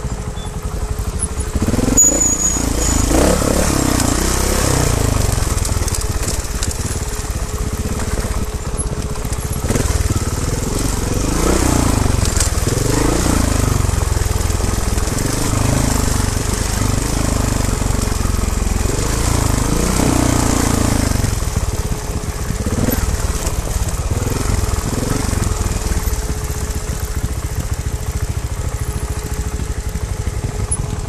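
Trials motorcycle engine ridden slowly over rough ground, its revs rising and falling every second or two as the throttle is worked.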